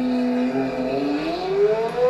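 Lamborghini Aventador V12 engine revving: the pitch rises, holds steady for about half a second, then climbs smoothly and steadily again toward the end.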